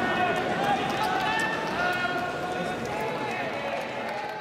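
A baseball crowd's many voices calling and shouting over one another, with a few scattered claps.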